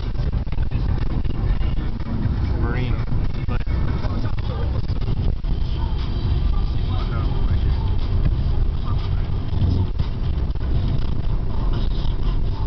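Steady low rumble of a car's engine and tyres heard from inside the cabin while cruising on a highway, with faint indistinct voices over it.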